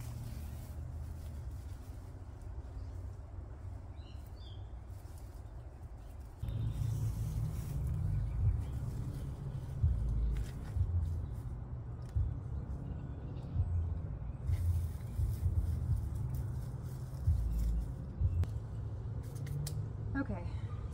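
Outdoor low rumble that gets louder and gustier about six seconds in, with faint rustling and crackles from hands working soil and straw around potato plants in a raised bed.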